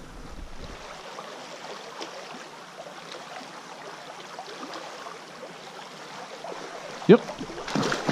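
Steady rush of a small, shallow stream's current running over riffles. About 7 seconds in comes a short, loud rising pitched sound, and just before the end a louder burst of noise as a hooked trout splashes at the surface.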